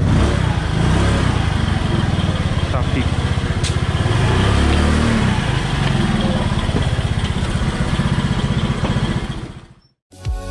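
Motorcycle engine running at idle with a steady low pulse, swelling briefly about halfway through, then fading out near the end.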